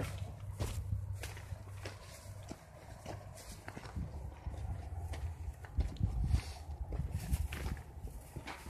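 Footsteps on a rocky dirt trail: irregular crunches and scuffs of shoes on stones and grit. Under them is a low rumble from the phone being jostled as it is carried.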